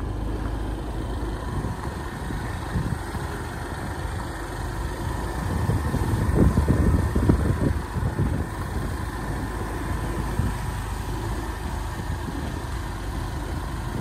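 A vehicle engine running steadily at low speed, with wind rumbling on the microphone; the rumble grows louder about six to eight seconds in.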